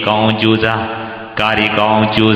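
Speech only: a Buddhist monk's voice delivering a Burmese sermon in a chant-like recitation, with drawn-out tones and a short drop in loudness a little past the middle.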